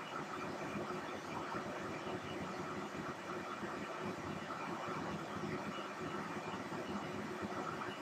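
Steady, faint background hiss of room tone with a low hum and no distinct events.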